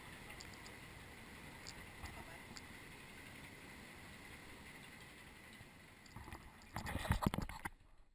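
River rapids ride raft drifting through a calm stretch of channel: faint steady water and ride ambience with a few light ticks. Near the end comes a short run of louder rumbling knocks.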